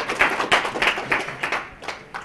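Audience applauding at the end of a talk, fading away toward the end.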